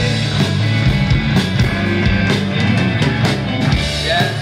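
Live rock band playing an instrumental stretch of a song: electric guitar, electric bass and drum kit.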